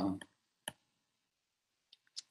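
A single sharp mouse click about two-thirds of a second in, advancing the presentation slide.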